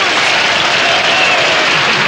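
Studio audience applauding and cheering, a steady dense clatter of clapping.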